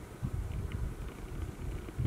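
Low, uneven rumble of handling noise on the camera's microphone as the camera is moved and shaken.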